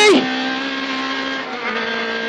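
Honda Civic rally car's engine running hard at steady high revs, heard from inside the cabin over road noise. About one and a half seconds in there is a brief dip, and the note comes back slightly lower.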